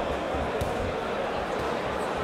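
Crowd chatter and shouting in a hall, with a few dull thuds from a boxing exchange in the ring, the sharpest just over half a second in.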